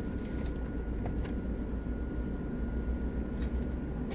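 Steady low rumble of a car cabin with its windows open, with a faint thin steady tone above it. A few faint clicks come through, about a second in and again after three seconds.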